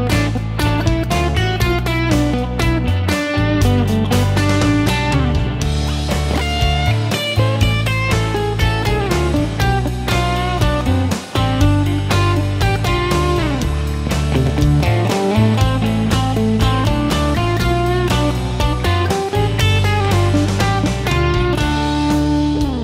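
Electric guitar, a Fender Telecaster, playing pentatonic lead licks with bent notes over a backing jam track of bass and drums. Partway through it plays minor pentatonic.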